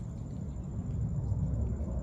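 Low outdoor rumble, a fluctuating background noise that swells slightly about a second and a half in.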